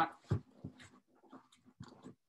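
A few soft knocks and rustles from hands working a ski boot's Velcro power strap closed, with a stronger knock early on and another near the end.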